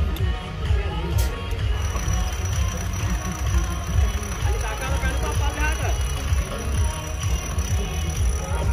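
Music and voices over the low, steady running of a modified off-road jeep's engine as it crawls up a steep dirt mound.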